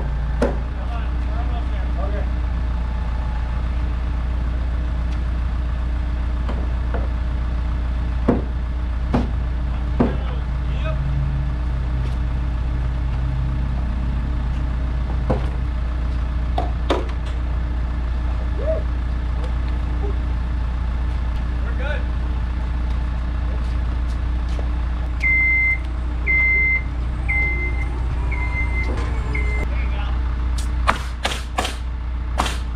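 Heavy truck's diesel engine running steadily under load as a crane holds a framed wall, with occasional sharp knocks from work on the framing. Near the end, a motion alarm gives about six evenly spaced high beeps, roughly one a second.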